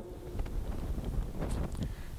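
Low rumble of room and microphone noise with a few faint rustles, during a pause in a lecture.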